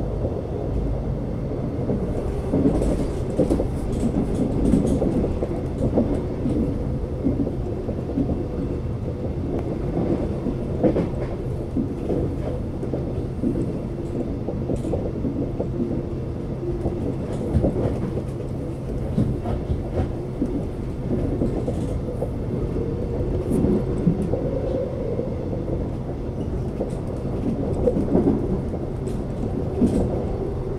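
Alstom X'Trapolis electric suburban train running on the line, heard from on board: a steady low hum and rumble with irregular knocks and clicks from the wheels on the track.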